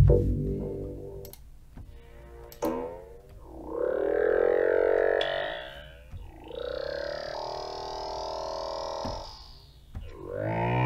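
FXpansion DCAM Synth Squad Amber synthesizer playing factory chord presets. A sustained chord swells in about three and a half seconds in and fades near six seconds, then a second chord holds until about nine seconds in, its upper tones sweeping as it plays.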